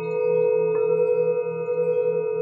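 Brass singing bowls ringing with several overlapping tones, the low one wavering in a steady pulse. One bowl is struck with a wooden mallet about three-quarters of a second in, adding a new ring.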